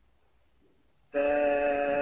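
A steady, horn-like electronic tone made of several pitches sounding together. It starts suddenly about halfway through, holds level for about a second, and ends abruptly.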